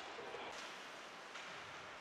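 Faint ice-rink ambience: a low, even hiss of game sound with no distinct skate strokes, puck hits or crowd reactions standing out.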